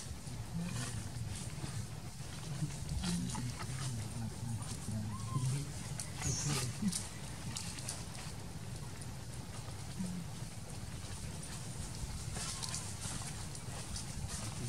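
Macaques moving on a ground of dry leaves, with scattered short crackles and clicks over a low, uneven murmur.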